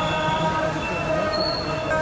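Din of a motorcycle rally in a street: many motorcycles running together, with several steady held tones and voices over them.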